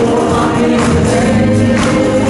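Loud live gospel praise music: a choir singing over instrumental accompaniment, with recurring percussive hits.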